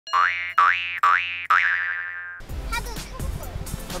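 Cartoon 'boing' sound effect played four times in quick succession, each a springy upward slide in pitch; the fourth is held with a wobble and fades out a little past halfway through. Speech over background music follows.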